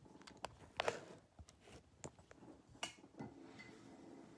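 Faint handling noise from a camera being moved and repositioned: a few scattered light knocks and clicks with soft rustling, the loudest just under a second in and another near three seconds in.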